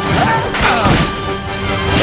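Animated film trailer soundtrack: music under cartoon fight sound effects, with several crashing hits, the heaviest about a second in.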